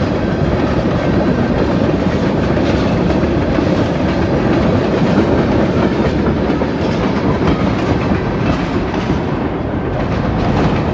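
Freight train's tank cars and then autorack cars rolling past close by at speed, a steady loud rolling noise of steel wheels on the rails.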